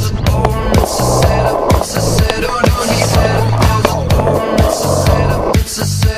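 Skateboard wheels rolling over a concrete skatepark, a steady rumble that stops a little before the end, under a loud music track with a steady beat.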